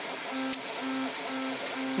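A 3D printer's stepper motors running in a repeated pattern: short tones at one steady pitch, about two a second.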